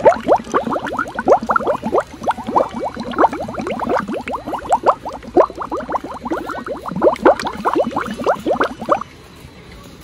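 Close, rapid bubbling of liquid: a dense run of short, rising bubble chirps that stops suddenly about nine seconds in.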